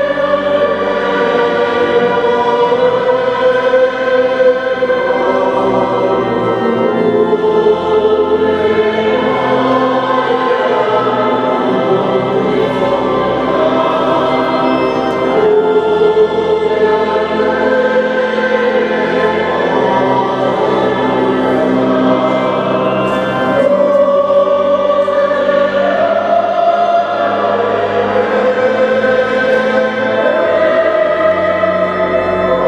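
Choir singing a sacred piece during Mass, with long held notes that change pitch every few seconds and carry on without a break.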